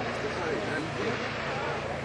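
Distant ski boat engine running steadily while towing a rider, a low even drone, with faint talk close by.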